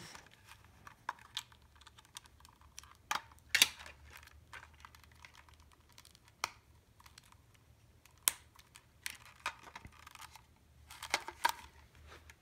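A 9-volt battery being snapped onto its clip connector and handled in a small plastic tuner's battery compartment: scattered sharp clicks a second or more apart, with quiet plastic rustling between them and a few quicker clicks near the end.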